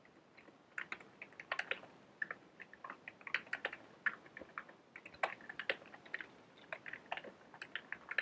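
Computer keyboard typing: quick, irregular keystrokes in short runs, starting about a second in.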